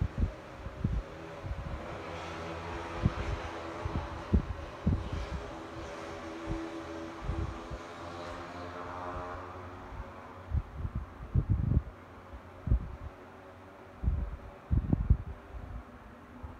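Arno Ultra Silence Force fan running: a steady whir of the blades with a faint tone in it, strongest in the middle seconds. Its airflow buffets the microphone in low gusts, more often near the end.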